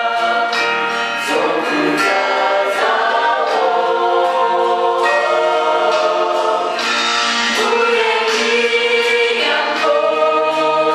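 A mixed group of women's and men's voices singing a gospel song together in harmony, in long held phrases.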